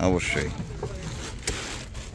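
A man's voice breaks off at the start, then a low, uneven rumble on a wooden fishing trawler's deck, with light knocks and handling noises, one sharp knock about halfway through.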